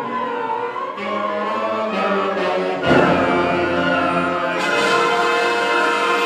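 School symphonic band of woodwinds, brass and percussion playing held chords. About three seconds in, the band comes in louder with low notes underneath.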